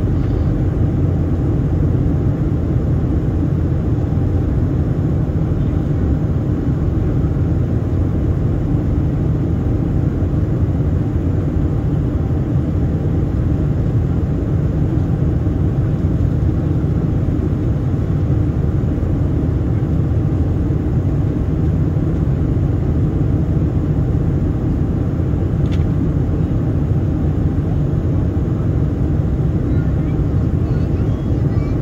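Steady cabin rumble of a Boeing 767-300ER in flight: engine and airflow noise heard inside the passenger cabin, deep and unbroken. One faint click near the end.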